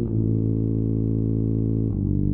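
Synthesized tuba from score-playback software holding one low, steady note rich in overtones, then moving to the next note just before the end.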